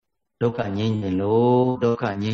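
A Buddhist monk's voice intoning a drawn-out, chant-like phrase of his sermon through a microphone. It starts after a brief silence about half a second in.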